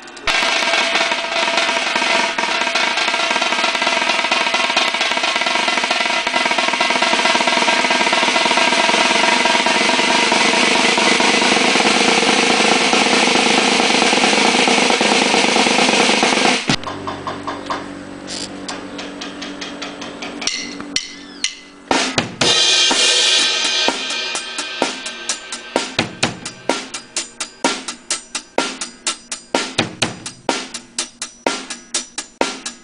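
A loud, dense, unbroken wash of sound that cuts off abruptly after about sixteen and a half seconds. Then an acoustic drum kit is played solo, drum strikes with some ringing cymbal hits, the strokes coming quicker and closer together toward the end.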